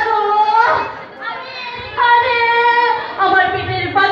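A woman's voice singing long held notes through stage microphones and loudspeakers, with a quieter break about a second in.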